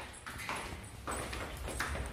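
Footsteps going down a staircase, several knocks spaced a little over half a second apart.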